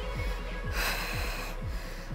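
A woman breathes out hard once, for under a second, about halfway through, with the effort of lifting into a glute bridge. Workout background music with a steady beat plays underneath.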